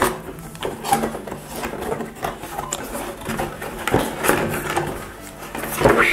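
Cardboard whisky gift box being opened by hand: rubbing and scraping of card with a string of light knocks and taps as the bottle is worked loose and lifted out.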